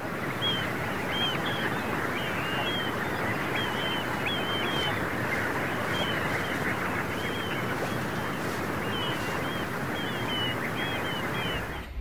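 Open-country ambience: a steady rushing noise with many short, high bird chirps repeating throughout.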